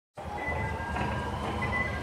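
Kawasaki ZZ-R400's inline-four engine idling with a steady, even low rumble. A faint high tone sounds on and off over it.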